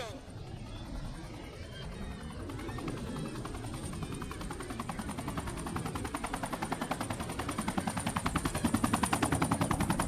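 Helicopter rotor chopping, a rapid even beat that starts a few seconds in and grows steadily louder as the helicopter approaches.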